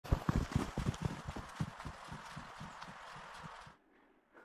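Footsteps crunching in snow: a steady run of footfalls with a crisp crunch, growing fainter, then stopping abruptly near the end.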